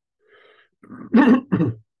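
A man clearing his throat: one loud, rasping burst in two or three pushes, starting about a second in.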